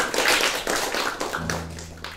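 Small audience applauding at the end of a song: dense clapping that thins out and fades, with a low steady hum coming in about a second and a half in.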